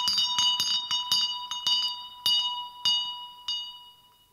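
Small wall-mounted servants' call bell jangling on its bracket, ringing to summon a servant. The strikes come quickly at first, then slow and fade as the bell swings to rest.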